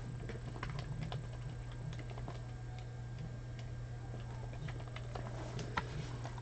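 Computer keyboard keys clicking faintly and irregularly as two short words are typed, with a sharper click near the end, over a steady low hum.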